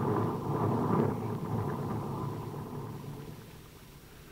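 Radio-drama sound effect of an explosion's rumble dying away as the fleeing speedboat is blown up, fading steadily over the few seconds.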